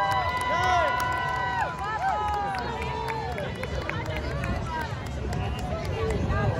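Parade crowd noise: many voices calling out and whooping at once, with a few long high calls in the first two seconds, then thinning to a general hubbub.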